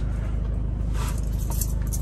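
Toyota Hiace van's engine idling steadily, a low even rumble heard from inside the cabin.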